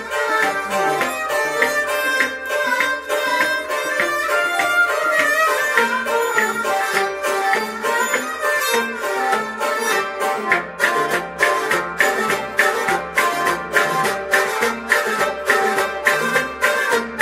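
Instrumental passage of Kashmiri Sufi folk music: harmonium melody with a bowed sarangi and a plucked rabab over a clay-pot drum (noot). The drum's beat turns sharper and more regular about ten seconds in, at roughly three strokes a second.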